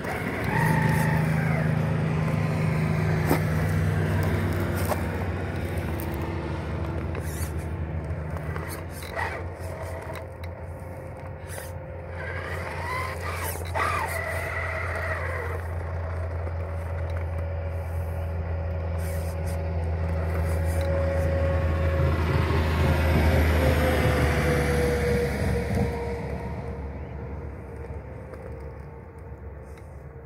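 Redcat Gen 8 RC crawler driving over loose gravel, stones clicking and crunching under its tyres. A steady low hum of road traffic runs underneath, swelling a few seconds before the end and then fading.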